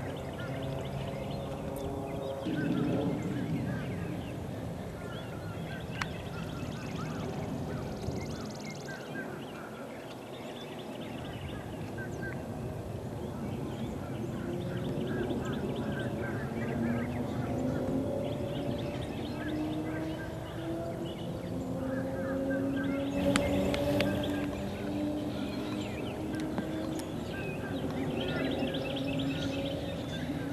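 Outdoor ambience of many birds calling and chirping in short repeated phrases, over a low drone that slowly rises in pitch in the second half.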